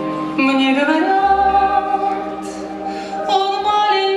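A song with sung vocals: voices holding long notes, sliding up into a new phrase about half a second in and starting another phrase a little after three seconds.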